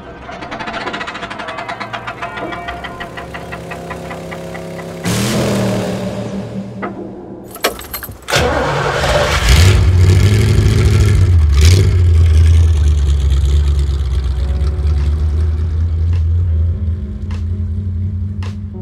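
An engine starts suddenly about eight seconds in, revs, then runs with a deep, steady, loud note, easing off near the end. Before it comes music with an even ticking beat.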